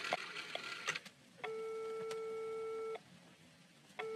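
A steady electronic beep tone, like a telephone line tone, sounds once for about a second and a half in the middle and cuts off sharply. Before it are a few faint crackling clicks.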